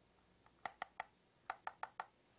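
Garfield Goose hand puppet clacking its wooden bill: two quick runs of three sharp clacks, about half a second apart. The clacking is the goose's reply, standing in for speech.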